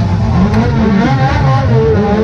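Turismo Nacional Clase 2 race car engine running and revving unevenly, its pitch rising and falling, heard from inside the cockpit.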